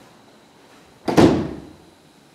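A door shutting: one loud thud about a second in, dying away within half a second.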